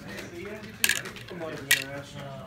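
Two sharp clicks of small hard pieces being handled on a tabletop gaming board, a little under a second apart.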